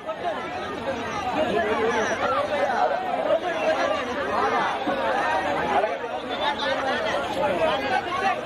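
Many people talking over one another at once: a steady crowd chatter of overlapping voices.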